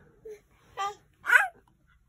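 A baby making two short, high-pitched vocal sounds, the second a squeal that rises and falls in pitch.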